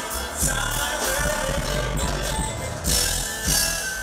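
Live R&B band playing, with drum kit, electric bass and keyboards; the drums keep a steady beat with bright cymbal crashes.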